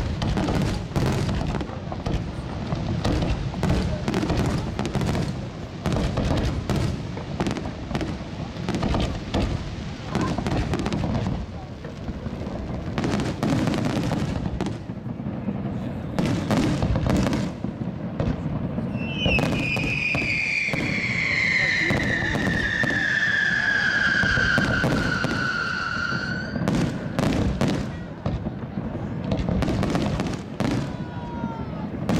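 Fireworks display finale: a dense run of overlapping bangs from aerial shells bursting. About two-thirds of the way through, a loud whistle sounds for about seven seconds, falling steadily in pitch, then cuts off.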